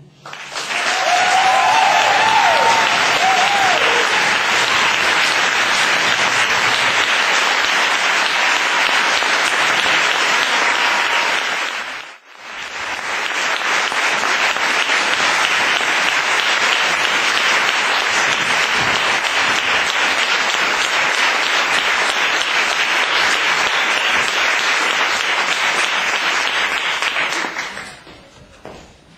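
Audience applauding at the end of a hand-drum performance, dense and steady; it breaks off for a moment about twelve seconds in, comes back, and fades out near the end.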